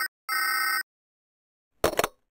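Electronic telephone ring: one short, steady ring burst of about half a second just after the start, then silence, then a brief sharp click-like sound near the end.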